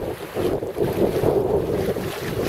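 Wind buffeting the microphone over the steady rush of choppy sea water along the hull, aboard a small Drascombe Coaster sailing boat under way.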